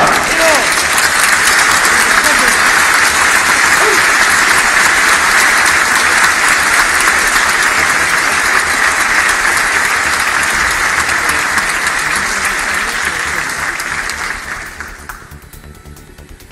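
A large assembly applauding in a big, reverberant chamber: dense, steady clapping that dies away about fifteen seconds in.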